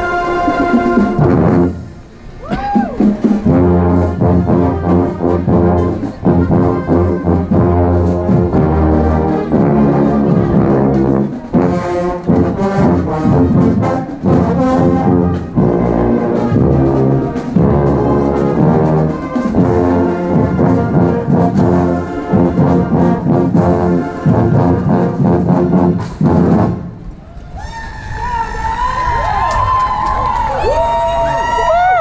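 Marching band brass playing a tune, with a trombone played right at the microphone standing out over sousaphones and trumpets. Near the end the playing stops and voices take over.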